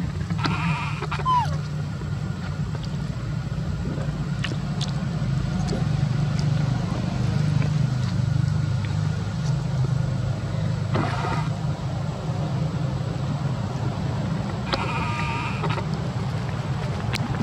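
A macaque calls briefly three times, near the start, about eleven seconds in, and near the end, each call a short high cry. Under it runs a steady low rumble.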